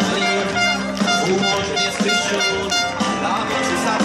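Music playing loud over large outdoor PA loudspeakers, with sustained instrumental tones.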